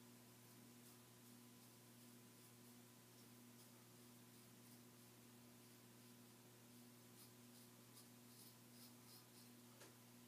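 Near silence: a steady faint electrical hum and hiss, with the faint scratch of a folding razor's blade across beard stubble, a few light ticks of it in the last few seconds.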